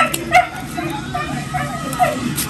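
Background voices of a gathering, with a short sharp sound standing out about a third of a second in.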